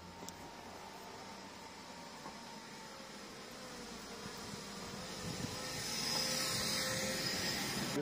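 A motor vehicle on the street, its engine and tyre noise growing steadily louder through the second half as it approaches and passes.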